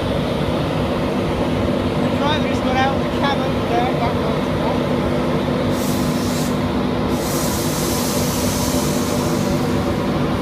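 Steady rumble and electric hum of an InterCity 225 train, a class 91 electric locomotive with Mk4 coaches, with a hiss coming in about six seconds in.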